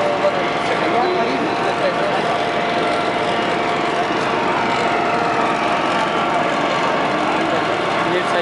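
Loud, steady din of vehicle engines running, with people's voices talking over it.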